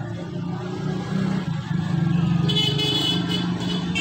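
Road traffic outside: a vehicle engine runs steadily, and a high horn sounds from just past halfway for over a second.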